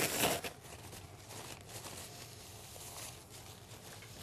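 Paper towel torn from a roll with a short rustle, then faint paper rubbing and rustling as ECG gel is wiped off the skin.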